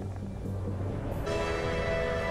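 Music from the episode's soundtrack: a faint low hum, then a sustained chord of many steady tones that comes in abruptly just over a second in and holds.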